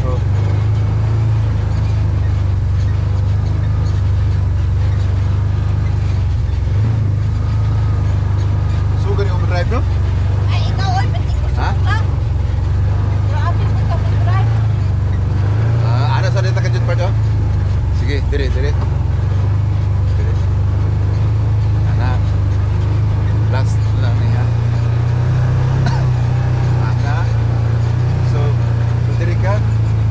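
Can-Am side-by-side's engine running under way with a steady low drone that swells a little about halfway through and again near the end, with people's voices talking over it.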